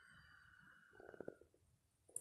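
Near silence: faint room tone with a few soft clicks about a second in.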